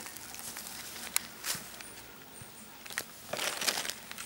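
Tent fabric rustling and crinkling as it is handled over the dome tent's poles, in short bursts with a sharp click about a second in and a longer rustle near the end.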